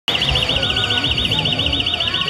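A loud, high warbling alarm tone, its pitch wobbling rapidly up and down about ten times a second, held steadily throughout.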